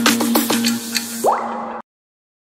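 Intro music with a held tone under a quick string of water-drop-like blips that fall in pitch, then a rising sweep about 1.3 s in; the music cuts off suddenly shortly before the end, leaving silence.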